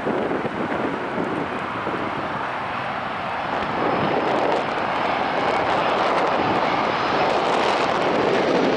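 Airbus A320-232 airliner on final approach, the whooshing noise of its IAE V2500 turbofan engines growing steadily louder as it nears.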